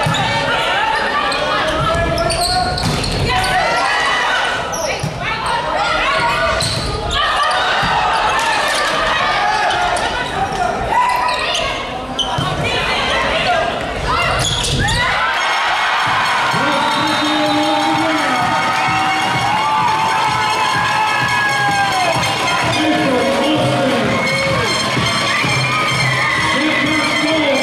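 Indoor volleyball rally: sharp ball contacts and bounces among shouting players and crowd voices, echoing in the hall. About fifteen seconds in this gives way to music over the stadium PA, which carries on to the end.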